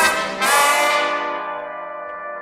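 Brass section of a swing band playing a loud chord, then a second held chord that slowly fades away.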